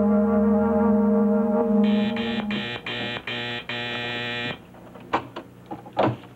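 A sustained brass-and-synthesizer music chord, a scene-ending sting, holds and then fades out. It is overlapped about two seconds in by an office desk phone's intercom buzzer, buzzing in a quick series of short pulses for about three seconds. A few light clicks follow near the end.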